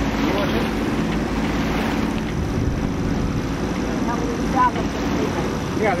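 Steady wind and water noise aboard a sailboat under way, with a low, even hum underneath and a few faint voices near the end.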